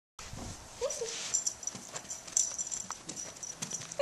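Toy poodle giving one short whine about a second in, with light clicks and taps around it as she begs on her hind legs.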